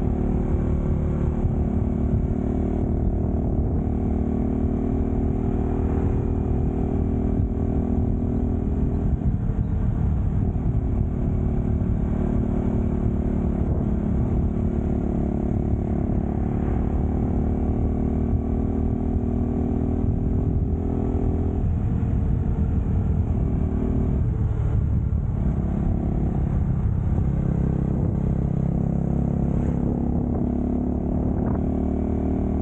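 Motorcycle engine running steadily while riding at speed. The engine note drops and climbs back twice, around ten seconds and again around twenty-five seconds in.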